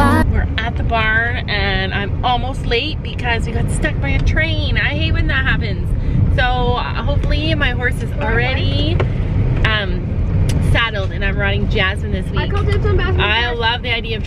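Steady low road rumble of a car's interior while driving, with voices talking over it.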